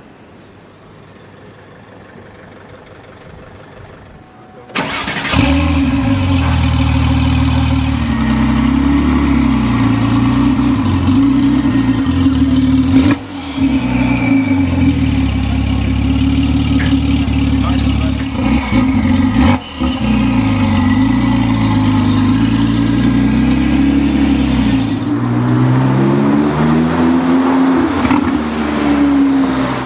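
W Motors Lykan HyperSport's twin-turbo flat-six starting with a sudden loud catch about five seconds in, then idling with several light revs, and revving up as the car pulls away near the end.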